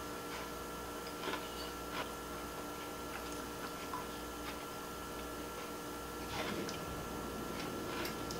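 A few soft clicks of a metal fork against a plate as a person takes bites of ice cream cake, over a steady faint hum.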